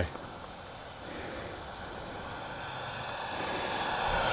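Electric ducted fan of an E-flite F-16 Falcon 80mm RC jet in flight: a steady rushing whine with faint high tones, growing steadily louder as the jet approaches.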